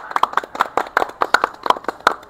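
A small group applauding, their hand claps quick and irregular.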